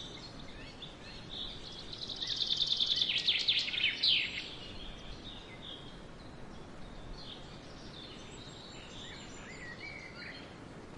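Birds calling over a steady background hiss: scattered faint high chirps, and a loud rapid trill about two seconds in that lasts about two seconds before ending abruptly.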